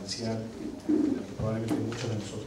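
A man's low voice lecturing in Spanish, in short drawn-out phrases with brief pauses, in a room.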